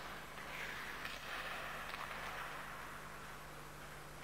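Ice hockey skates scraping and carving on the ice, swelling for a couple of seconds, with a few faint clicks, over a steady low electrical hum.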